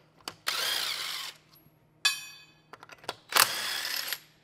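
Cordless power tool spinning lug nuts off a wheel hub, in two bursts of just under a second each. Between them comes a single metallic clink that rings out.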